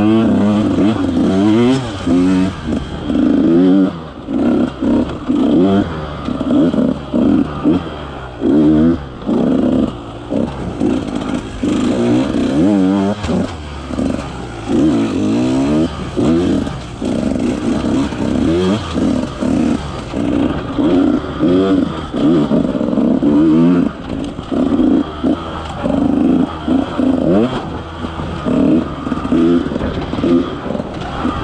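KTM 150 XC-W two-stroke single-cylinder dirt bike engine being ridden on and off the throttle, its pitch rising and falling in short bursts every second or two.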